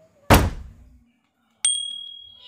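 Sound effects of a subscribe-button animation: a short thump about a third of a second in, then near the end a click followed by a high, ringing bell ding, the notification-bell sound.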